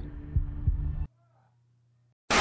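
A low steady hum with a few dull, heartbeat-like thumps under it. It cuts off abruptly about a second in, leaving near silence.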